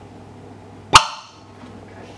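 A single sharp, loud pop about a second in, with a brief ringing tail, as a test tube of 10% fuel gas and 90% oxygen ignites: the lean mixture burning in one go, total combustion.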